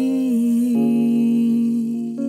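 Closing theme song: a voice holds one long, drawn-out note over soft backing music, moving to a slightly lower note about three quarters of a second in.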